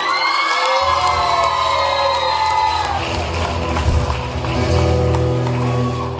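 A song ending live in a hall: a male singer holds a long final note over the band's sustained backing, then the audience cheers and shouts over the ringing last chord.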